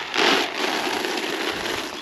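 Pig feed pellets pouring from a plastic scoop into a feed pan, a steady noisy pour that is loudest in the first half second.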